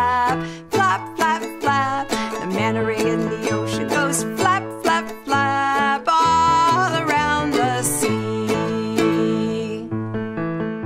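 A children's song played on a strummed ukulele over an accompaniment with a stepping bass line, with a woman singing along in places.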